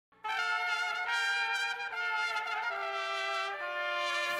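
Brass music, trumpets holding sustained chords that step downward in pitch about once a second, starting just after the opening.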